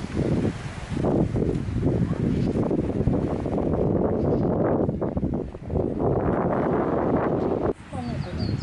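Wind buffeting the camera microphone: a dense, low rumble that surges and eases unevenly, breaking off sharply near the end.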